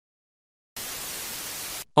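A short burst of static hiss, about a second long, starting after a brief silence and cutting off suddenly: a TV-static transition sound effect between posts.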